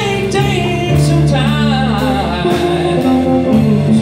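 Live blues band playing: electric guitar, bass guitar, drum kit and Nord keyboard, with a man singing over them.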